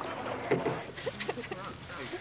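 Rowing eight on the river, with a single knock about half a second in and short, scattered voice calls.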